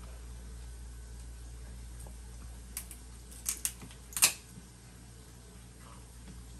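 Kitchen scissors snipping through lobster shell: a few sharp, crunching clicks in the middle, the last and loudest a little after four seconds in, over a low steady hum.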